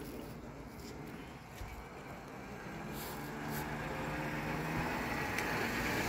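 A passing road vehicle, its engine and tyre noise growing steadily louder through the second half.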